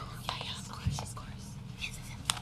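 Low whispered talk and handling noise, with papers rustling and a few light clicks and knocks over a steady room hum.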